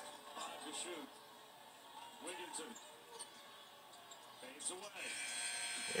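A televised college basketball game playing faintly from a TV in a small room: a commentator's voice comes and goes, and arena crowd noise swells about five seconds in.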